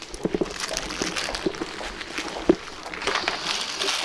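Indistinct chatter of a roomful of people working in small groups, with scattered knocks and paper rustles from cards being handled; the chatter swells near the end.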